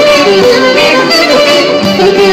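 Live band playing traditional-style music, with a clarinet carrying a loud, ornamented melody over the accompaniment.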